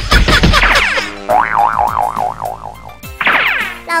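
Cartoon comedy sound effects over a music sting: a busy comic burst, then a wobbling, warbling tone at about four wobbles a second, then a short falling swoop near the end.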